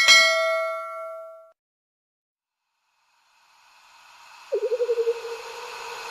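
Bell-like notification ding from a subscribe-button animation, ringing and dying away over about a second and a half. After a pause, a hissing whoosh swells up with a wavering tone near the end.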